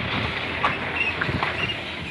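SUV driving slowly past at close range: steady engine and tyre noise over a rough road surface, with a few small clicks.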